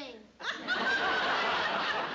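Audience laughter breaking out about half a second in and holding steady, in response to a joke.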